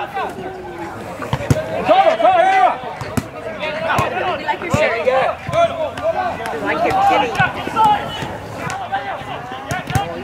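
Indistinct shouting of players and coaches across an open soccer field, with a few sharp knocks of the soccer ball being kicked.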